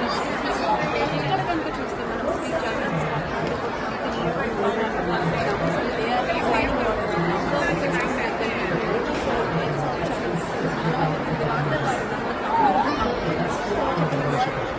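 A person speaking over the steady chatter of a crowd.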